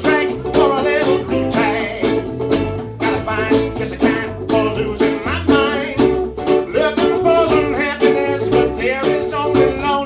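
Live ukulele band playing: ukuleles strummed briskly over a moving bass line, with a wavering melody line on top.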